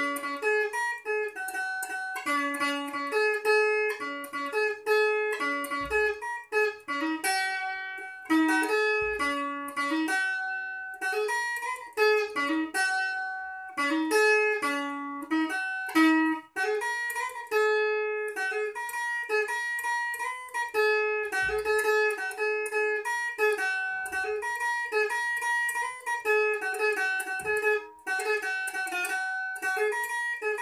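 Stratocaster-style electric guitar played clean, picking a single-note lead solo one note at a time, with notes ringing briefly and some repeated.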